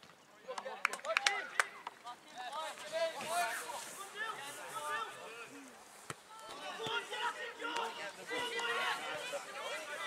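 Distant shouts and calls of voices on a football pitch, patchy and overlapping. A few sharp knocks come about a second in.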